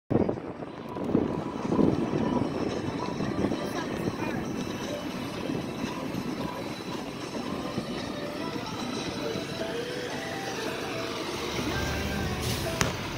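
Steady street noise of vehicles running near an emergency scene, with indistinct voices in the background.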